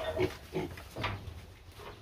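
Piglets grunting: a few short grunts in quick succession.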